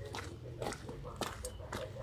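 Footsteps crunching on a gravel path, about two steps a second, faint against a low steady hum.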